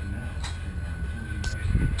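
Low steady rumble of camera microphone noise with a couple of sharp clicks, then handling knocks near the end as the camera is picked up.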